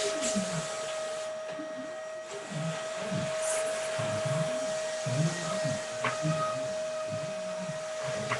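Vacuum cleaner running steadily, its motor giving one constant hum over a hiss.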